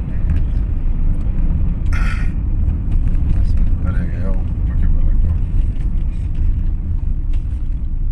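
Steady low rumble of a car's engine and road noise heard inside the cabin of a moving car, with a couple of short voice sounds about two and four seconds in.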